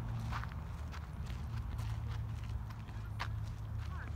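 Footsteps on a dirt path, a scatter of short scuffing steps, over a steady low rumble.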